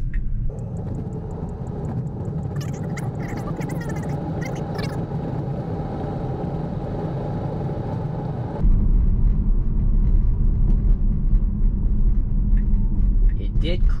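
Road and tyre noise of a Tesla driving itself on FSD Beta: a steady rumble with no engine sound. About two-thirds of the way in, the low rumble turns much louder and deeper.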